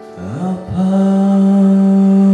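A man's singing voice slides up into one long held wordless note over sustained piano chords, part of a solo piano-and-vocal song.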